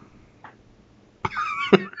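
Quiet room for about the first second, then a person bursts into a short, breathy laugh.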